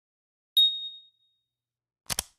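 A single bright electronic ding, an intro logo sound effect, struck about half a second in and ringing out for about a second.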